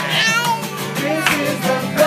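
People singing together with a guitar. Just as it begins, a toddler gives a high-pitched squeal of laughter that falls in pitch over about half a second.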